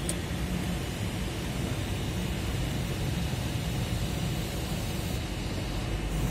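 Panoramic sunroof motor of a 2020 Kia Sorento running steadily as the glass panel closes, over a steady background hiss.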